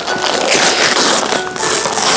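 Gift wrapping paper being torn and crumpled by hand as a box is unwrapped: a continuous rustling and ripping.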